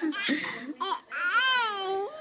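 A high-pitched voice babbling and laughing in nonsense syllables, then one long wavering call that rises and falls in pitch from about a second in.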